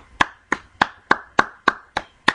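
A run of sharp hand claps at an even pace, about three and a half a second.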